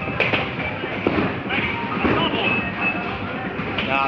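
Bowling-alley background of music and indistinct chatter, with a few sharp knocks.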